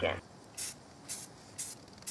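Aerosol spray-paint can sprayed in short bursts: three quick hisses about half a second apart.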